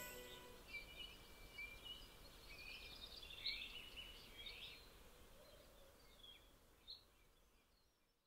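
Faint birds chirping in short scattered calls over a low hiss, growing fainter toward the end. The last note of the lute and bowed string duet dies away at the very start.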